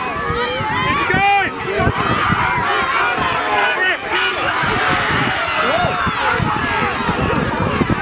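Many voices shouting over one another: the sideline crowd yelling on a rugby maul as it drives for the line.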